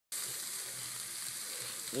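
Chicken skewers, sausages and steaks sizzling on a barbecue grill: a steady hiss.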